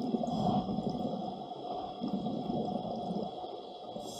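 A scuba diver exhaling through a regulator underwater: two rumbling gushes of bubbles, the first at the start and the second about two seconds in, each lasting over a second.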